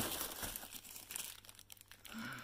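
Thin plastic bags crinkling as hands rummage through a box of bagged sunglasses, loudest in the first second and then fainter.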